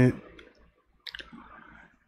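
A spoken word ends, then a short pause holds a couple of faint clicks about a second in, followed by a soft, faint hiss.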